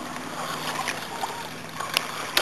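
Steady outdoor noise of wind and small waves lapping at the shoreline, with a short click near the end.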